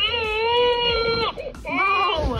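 RealCare Baby infant simulator playing its recorded crying: one long steady wail, then a second cry starting near the end. The crying is the doll's call to be fed its bottle.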